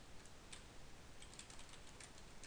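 Faint computer keyboard typing: a scattered run of soft key clicks.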